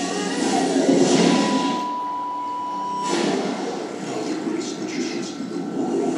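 Film trailer soundtrack playing from a television: music and sound effects, with a steady high tone held for about a second and a half partway through.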